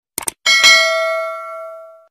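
Two quick clicks, then a bright bell ding that rings on and fades away over about a second and a half: the notification-bell sound effect of a subscribe-button animation, played as the cursor clicks the bell icon.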